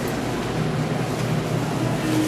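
Steady indoor background din of a busy lobby café: an even noisy hum with a faint low drone under it and no distinct events.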